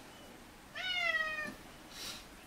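A house cat meowing once, a drawn-out cry that rises at the start and then slowly falls in pitch: the cat is crying to be let outside.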